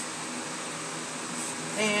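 Electric fan running, a steady even rushing noise with no rhythm.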